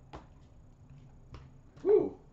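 A few faint, light clicks and taps from the cardboard box of a hockey card tin as it is opened and handled, then a short voiced "mm" near the end.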